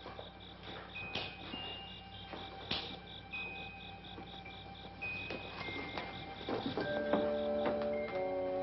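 Crickets chirping in a fast, even pulse, with a few sharp knocks. Near the end a sustained chord of film score music comes in.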